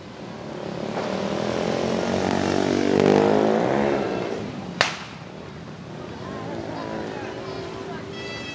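A motor vehicle passes close by, its engine sound swelling and then dropping in pitch as it goes past. Just after it, a single sharp bang.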